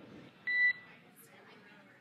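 A single short electronic beep on the air-to-ground radio loop, a quarter-second tone about half a second in, followed by faint hiss.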